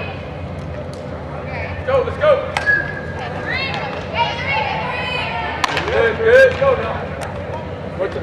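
Softball players' high-pitched voices calling out in three short spells across a large, echoing indoor field, with a few sharp knocks, the loudest about five and a half seconds in, over a steady low hum.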